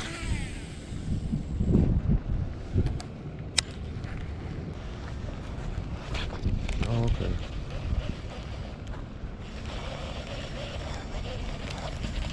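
Wind rumbling on the microphone, with a few sharp handling clicks. About two and a half seconds before the end a steady whirring hiss begins as a baitcasting reel is cranked to bring the lure back.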